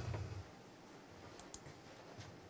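A few faint, sharp computer mouse clicks in the second half, as the trial stones of a variation are cleared from a digital Go commentary board.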